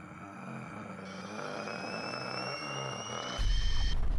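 Outro sound effect: a steady synthesized drone with a slowly rising whine layered over it, then a loud deep boom about three and a half seconds in.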